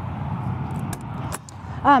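A few sharp metallic clicks about a second in from the latch of a motorhome's exterior storage-bay door being handled, over a steady low rumble.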